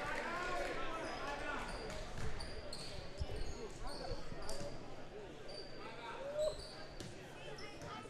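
Gymnasium crowd and bench chatter with sneakers squeaking on the hardwood court and a few basketball bounces, the dribbling picking up near the end.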